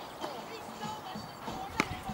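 A basketball bounces once on an outdoor court near the end, a single sharp slap, over faint distant voices.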